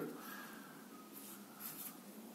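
Faint rubbing of the Xiaomi Mi Band 3's silicone strap in the fingers as the tracker capsule is pushed out of it, a little louder shortly before the end.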